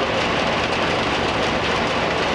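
Asphalt production plant running, a loud, steady, even machinery noise with no distinct beat or pitch.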